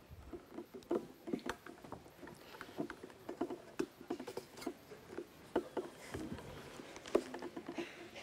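Faint, irregular small clicks and taps of objects being handled on a tabletop during a lemon-battery demonstration: a lemon, a knife and a plate with a multimeter and its leads.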